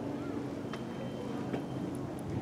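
Outdoor background: a low steady hum with faint distant voices and two light clicks.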